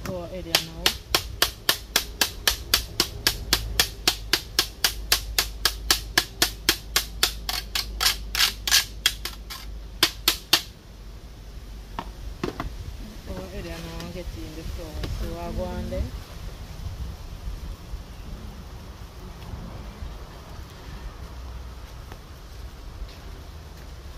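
Carrot being grated on a hand-held metal grater into a plastic basin: a quick, even run of rasping strokes, about three or four a second, stopping about ten seconds in. A voice is heard briefly a few seconds later.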